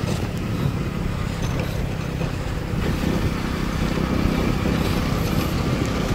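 Motorcycle engine running at road speed while riding, a steady low rumble.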